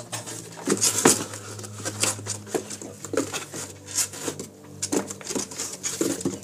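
Small hard plastic toy figures clicking and clattering irregularly as a hand rummages through them in a box.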